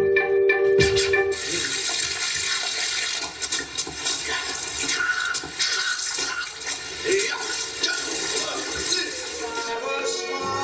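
Soundtrack of a stage mime act: music that, about a second in, gives way to a loud, even rushing noise like pouring water, with faint tones running through it.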